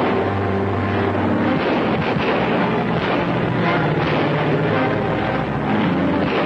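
Car engines running as the cars pull away, heard over continuous background music.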